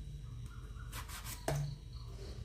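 A knife cutting chunks off a raw green brinjal, with the pieces dropping into a pan of water. The cuts come about once every second and a half, with the clearest one about a second and a half in.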